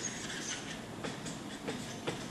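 Marker pen writing on a flip chart pad: faint, short scratchy strokes over steady room noise.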